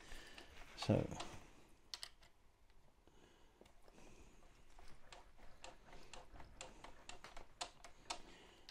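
Light clicks and taps of small metal parts and a hand tool being handled on a workbench, a few early on and a quick scatter of them in the second half.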